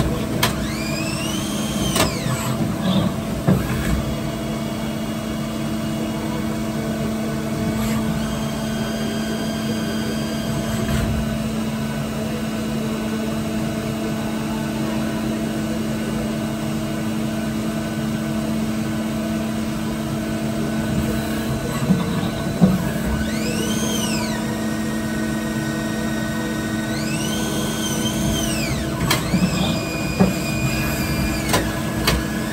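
Star Micronics SV-20 Swiss-type CNC lathe running: a steady hum under several motor whines that rise, hold and fall as the slides and tool blocks move, with a few sharp clunks along the way.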